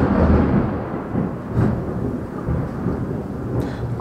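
Rain with a low rolling rumble of thunder, loudest at the start and slowly easing off.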